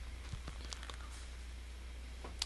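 A little low, steady electrical hum from a Line 6 Helix guitar processor with a guitar plugged in and its output live, with a few faint clicks and rustles as headphones are handled and put on.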